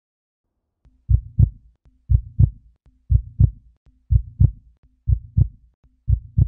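Heartbeat sound: a steady lub-dub double thump about once a second, beginning about a second in.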